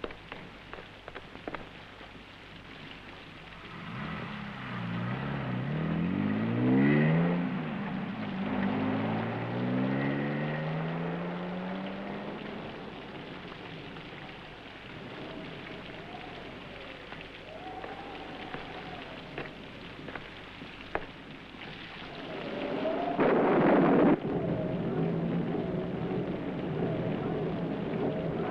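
Steady rain falling, with a car engine revving up several times through the gears as it pulls away in the first half. Near the end there is a louder surge of noise.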